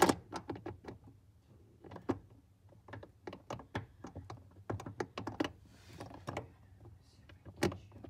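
Irregular small clicks, knocks and rattles of hands working parts and tools around the clutch pedal assembly under the steering column, over a faint steady low hum. A sharper knock comes right at the start.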